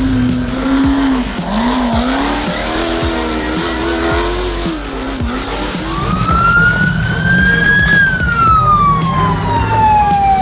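Off-road buggy engine revving unsteadily, its pitch rising and falling while it labours up a muddy slope. In the second half a siren-like wail takes over, rising slowly for about two seconds and then falling for two more.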